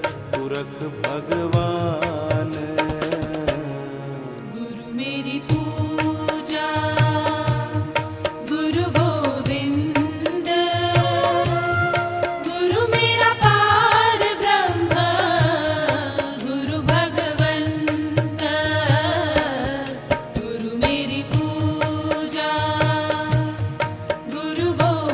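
Devotional Hindi bhajan music: a melodic line over held tones, with a steady drum beat. The music dips briefly about four seconds in, then builds again.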